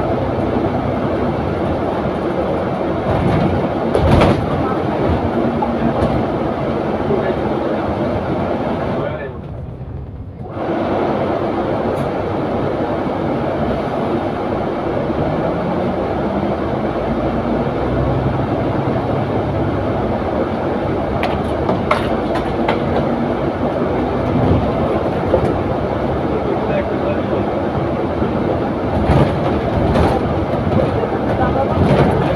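Double-decker bus interior heard from the upper deck: steady engine and road rumble, with occasional knocks and rattles. The engine note rises between about fourteen and eighteen seconds in as the bus gathers speed.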